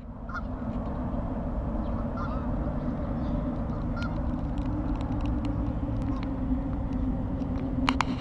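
A few short, faint Canada goose honks over a steady low outdoor rumble, with a brief clatter of clicks near the end.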